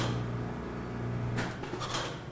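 Steady low hum of a pressurised eSpring water purifier on a burst test rig at five times house line pressure, broken by a sudden sharp crack about one and a half seconds in as the unit fails and springs a leak, spraying water.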